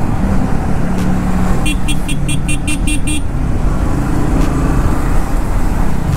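Motorcycle engine and wind rumble while riding in city traffic, with a rapid string of about seven short, high-pitched horn beeps about two seconds in.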